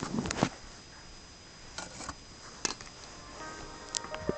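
Knocks and clatter in the first half second, then a few sharp clicks. About three and a half seconds in, the Samsung Galaxy Mega's startup chime begins, a set of steady held tones that plays with the boot animation.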